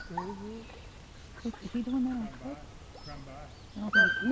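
Indistinct talking in a few short, quiet phrases.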